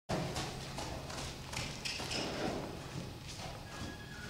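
Hoofbeats of a loose horse moving at speed over the sand footing of an indoor arena: a run of dull thuds in an uneven rhythm.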